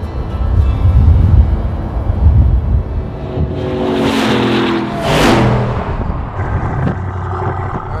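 Supercharged 6.2-litre V8 of a Cadillac Escalade (Hennessey H650) running hard with a heavy low rumble, then passing close by, its engine note dropping in pitch as it goes past about four to five seconds in.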